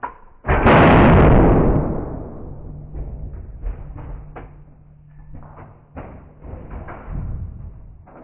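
A very loud, sharp bang about half a second in as a 50,000-ampere capacitor-bank pulse blows apart a Samsung Galaxy Nexus phone, ringing away over a second or two. It is followed by a run of scattered knocks and clatters.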